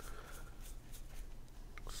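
Paper board-game cards rustling faintly and sliding against each other as a deck is fanned through by hand, with a few small clicks near the end.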